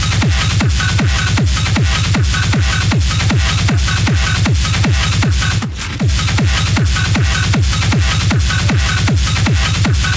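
Hard techno (schranz) DJ mix: a heavy kick drum with a falling pitch, about two and a half beats a second, comes in at the start after a melodic passage. The kick drops out for a moment a little past halfway.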